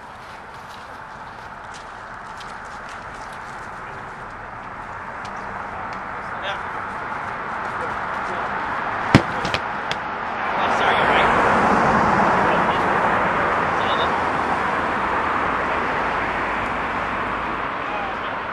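A broad rushing noise that swells slowly for about ten seconds and then gradually fades, with one sharp knock about nine seconds in and two smaller clicks just after.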